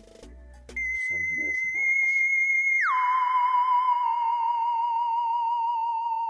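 Eerie theremin-like electronic tone added as a sound effect. It comes in high about three-quarters of a second in, wavers steadily, then slides down about an octave near three seconds in and holds, still wavering.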